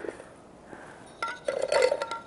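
A few light glass clinks about a second in, with a short ringing after them, from a martini glass knocking against a glass bowl of sugar as its rim is dipped.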